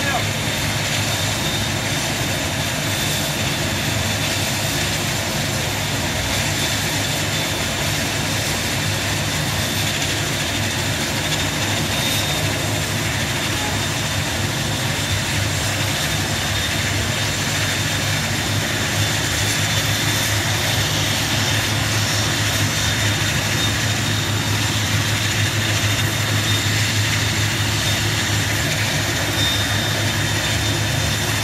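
Twin-turboprop airliner's engines running steadily on the ground: a constant whine with a fixed high tone over a low hum, getting a little louder in the last third.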